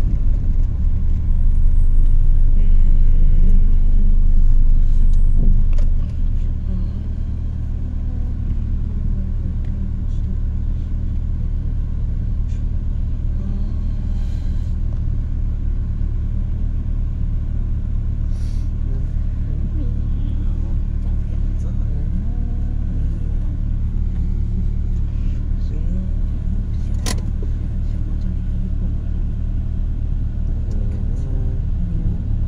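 Car interior noise: a steady low engine and road rumble heard from inside the cabin, louder for the first six seconds and then settling to a lower, even level as the car moves slowly in traffic. A single sharp click sounds near the end.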